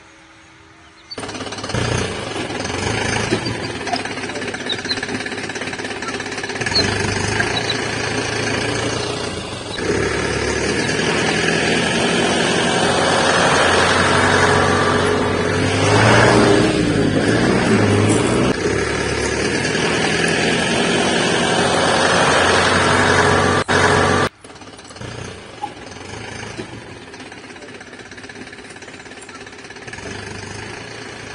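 A loud, rattling truck-engine sound starts about a second in, swells with a brief dip in pitch in the middle, and cuts off abruptly near the end. A quieter, steady engine-like drone follows.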